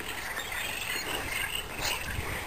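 Outdoor ambience at a pond: a steady background of insects, with a short hiss just before the end.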